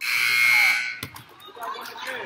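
Gymnasium scoreboard buzzer sounding loudly for about a second, then cutting off, followed by a single knock and murmuring crowd voices.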